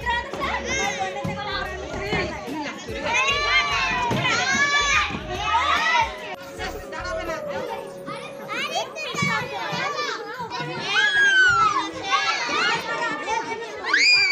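Children playing at a playground: many young voices shouting, squealing and chattering over one another without a break.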